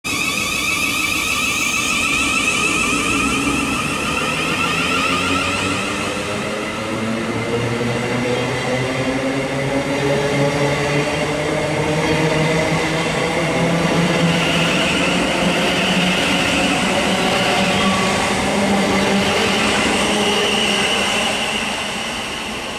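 Siemens Desiro City Class 700 electric multiple unit pulling away and accelerating. Its traction motor whine rises slowly in pitch as several layered tones over the steady running rumble of the train.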